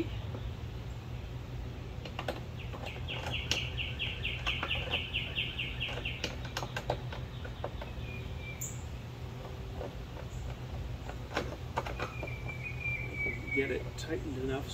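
Scattered light clicks and taps of the mast-bracket nuts and hardware being tightened by hand. About two seconds in a songbird sings a rapid trill for some four seconds, with short chirps again near the end, all over a steady low hum.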